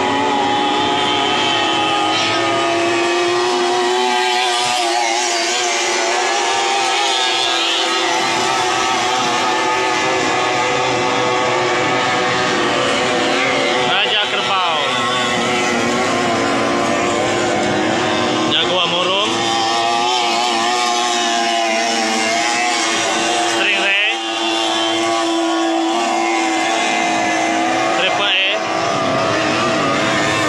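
Three-cylinder 30 hp racing outboard motors running flat out, a loud, steady drone whose pitch sweeps briefly several times as boats pass or change throttle.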